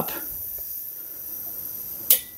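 Compressed air hissing steadily through an air compressor's pressure regulator as its knob is wound up, pressurising a water-pump pressure switch.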